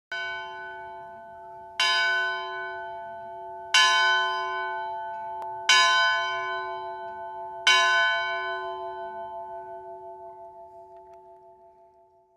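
A single church bell struck five times, about two seconds apart, all at the same pitch. Each stroke rings on under the next, and the last one dies away slowly with a pulsing hum.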